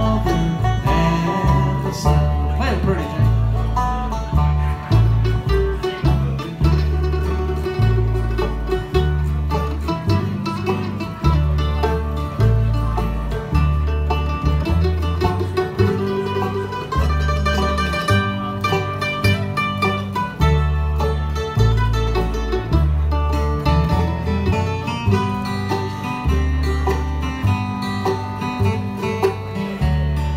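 Live bluegrass band playing on banjo, mandolin, acoustic guitars and upright bass, the bass notes keeping a steady beat underneath.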